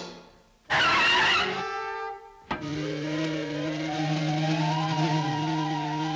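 Cartoon sound effects for a hard tennis shot: a loud whoosh about a second in, a short steady whine, then a sharp crack. After the crack comes a steady whirring drone with a wavering pitch riding over it as the ball flies.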